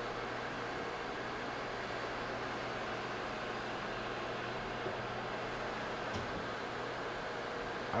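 Tschudin HTG 310 cylindrical grinder running unloaded: a steady low hum under an even hiss, with a couple of faint clicks in the second half.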